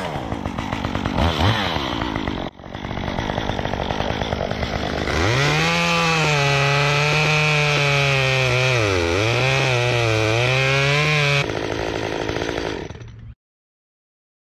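Chainsaw revving briefly a couple of times, then running hard through a pine branch for about six seconds, its pitch sagging and recovering as the chain bites, before dropping back and cutting off suddenly near the end.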